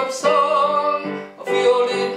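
Electronic keyboard played by hand: a simple melody of sustained notes, each held for about half a second before the next, over chords.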